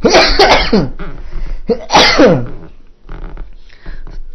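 Two loud, harsh bursts from a man's voice, the second under two seconds after the first, each falling in pitch.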